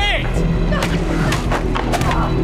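A short yell at the start, then a quick run of four or five sharp hits and crashes from the fight, over a steady dramatic film score.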